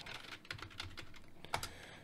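Faint typing on a computer keyboard: a quick run of light key taps as a short word is typed.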